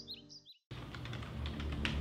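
A bird's rapid, repeated chirps over background music break off abruptly about half a second in. After a brief silence, computer keyboard typing clicks over low, sustained music.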